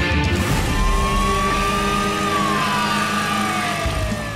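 Dramatic intro music of sustained chords, with a swelling sweep that rises slowly and then falls in pitch through the second half. There are low booms about half a second in and again near the end.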